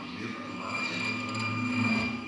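Electroacoustic concert music: sustained drone tones at several pitches under a shifting, grainy noise texture, swelling to a peak near the end.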